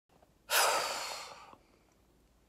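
A woman's heavy sigh: one long breath out that starts sharply and fades away over about a second.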